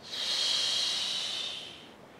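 A woman's forceful exhale through the mouth: a long, steady hiss of breath that fades out near the end. It is the exhale on the effort of a Pilates crunch, breathed out against resistance.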